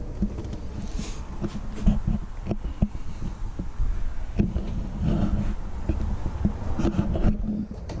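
Footsteps and handheld-camera handling noise inside an RV: a low rumble with irregular thumps and clicks as the person moves through the trailer.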